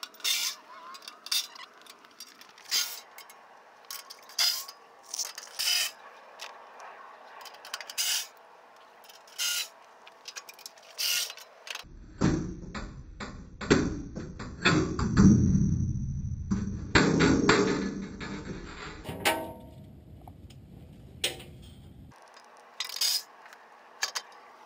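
Sharp metallic clicks and clinks of tools and bolts as the skid plates are unbolted from under the truck, then, about halfway through, a cordless ratchet runs with a whining motor in spurts for about ten seconds.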